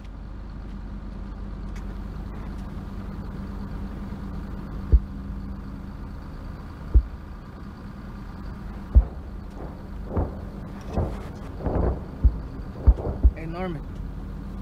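Low, steady rumble of an idling tank engine. From about five seconds in, a deep boom comes roughly every two seconds, then a quicker run of booms and thuds near the end.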